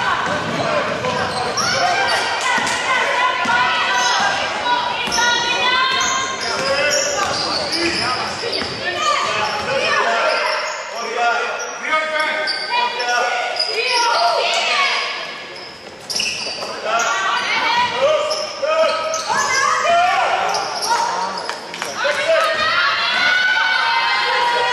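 Basketball bouncing on a hardwood court during live play, with players calling and shouting over it. The sound carries the boomy reverberation of a large sports hall.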